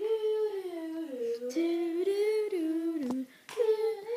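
A girl humming a wordless tune in long held notes that glide up and down, with a short break and a sharp tap about three seconds in.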